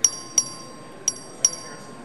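A legislative chamber's voting bell ringing in high, clinking double dings, two pairs about a second apart with the strokes of each pair a third of a second apart. It signals that a record vote is open. A faint steady high tone sounds beneath the dings and stops near the end.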